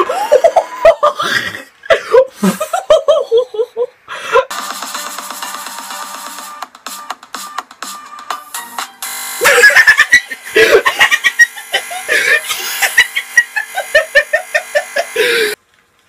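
Excited voices and laughter alternating with music, with a steady, evenly repeating stretch of sound in the middle. The sound cuts off abruptly just before the end.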